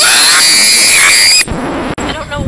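A loud, harsh burst of noise that starts with a rising sweep and cuts off suddenly about a second and a half in, followed by quieter, uneven sounds.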